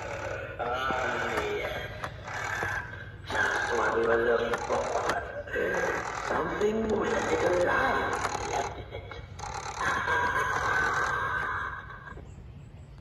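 A Gemmy life-size animatronic's built-in speaker playing its recorded spoken phrases in a character voice, in several bursts with short pauses between.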